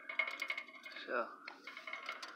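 A scatter of small, light clicks and clinks from the shot-up butterfly yard ornament being handled by hand.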